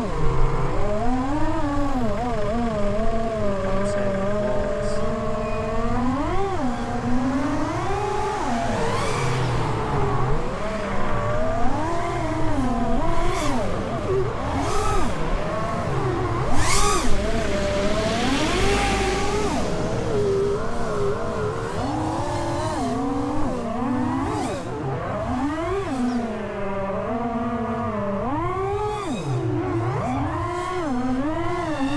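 FPV quadcopter on prototype T-Motor 2505 1850 KV motors running on 6S, its motor and propeller whine rising and falling continuously with the throttle during agile low flying.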